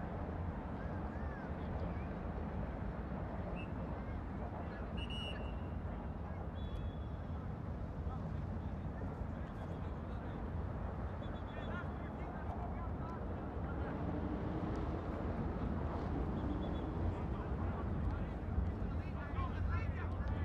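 Outdoor ambience at a soccer pitch: a steady low rumble with faint distant voices from the field and a few brief high tones.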